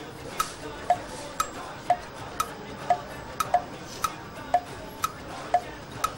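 A clock tick-tock sound effect, about two ticks a second alternating between a higher and a lower tick, marking the time a contestant has to answer a quiz question.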